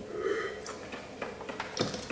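A short sip of red wine drawn in from a tasting glass, then a few faint clicks.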